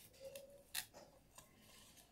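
Near silence, with a few faint clicks and rustles of hands working sand and leaf cuttings in a metal bowl.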